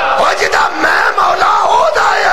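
A crowd of men shouting together, many voices overlapping at once.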